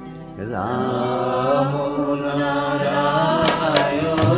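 Bengali devotional nam sankirtan: after a brief lull, a voice starts a chanted line about half a second in, with long sliding held notes over a steady drone. A few sharp percussion strokes come near the end.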